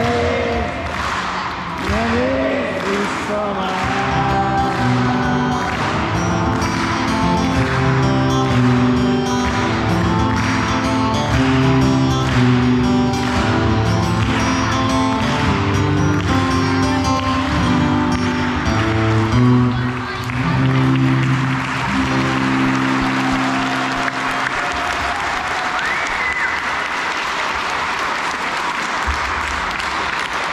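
Live acoustic guitar music, strummed in an even rhythm, that ends about three-quarters of the way through, followed by audience applause.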